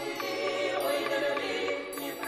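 A small mixed-voice vocal ensemble, mostly women with one male voice, singing sustained chords unaccompanied.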